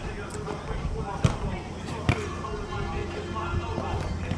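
A futsal ball being kicked on an artificial-turf court: two sharp thuds a little under a second apart, over steady low background noise and voices.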